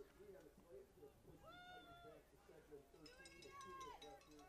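Near silence with faint, distant voices from the field: a low murmur and two high-pitched calls or shouts, one about a second and a half in and a longer one near the end.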